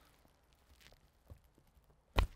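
Near silence while a grafting knife is drawn through apple scion wood, with one faint click a little past halfway.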